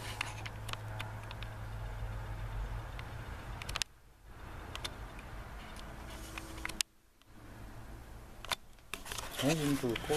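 A small fire of paper and kindling burning in a barrel stove, giving sporadic crackles over a low steady hum, with two brief breaks in the sound about 4 and 7 seconds in.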